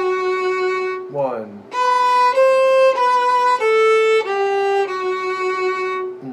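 Solo violin bowing a march part in long held notes that change pitch about every half second, with a short break about a second in.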